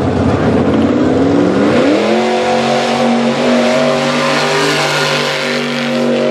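Mud drag pickup truck's engine revving hard off the start line, its pitch climbing over the first two seconds, then held at high revs as the truck charges down the mud pit. A rushing hiss of spinning tyres throwing mud runs under the engine.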